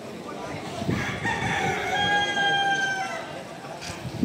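A rooster crowing once: a single long call of about two seconds that starts about a second in, settles on a steady pitch and tails off, over a crowd's murmur.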